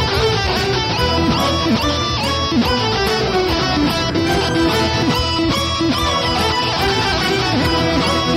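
Electronic keyboard playing a dense, loud instrumental rock passage in several layers, with sliding, bent notes in a guitar-like sound.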